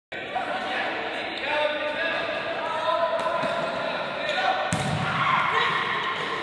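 Pupils' voices shouting and calling in a school sports hall, with a basketball thudding on the hard floor a few times, the loudest bounce about three-quarters of the way through.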